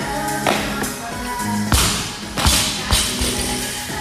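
Pop music playing, with a loaded barbell dropped from overhead onto rubber gym flooring a little before halfway through: its bumper plates hit with a loud thud, then bounce twice.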